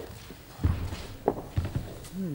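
A few dull thumps with clicks in a room: one about half a second in, then two more close together near the end.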